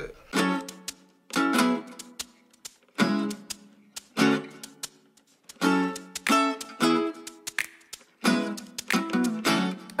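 Acoustic guitar strumming single chords, about eight in all, each ringing out and fading, with short pauses between them.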